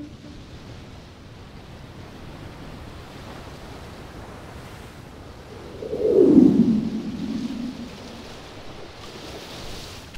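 Sea surf washing steadily on a beach, with one louder surge about six seconds in that sinks in pitch as it fades.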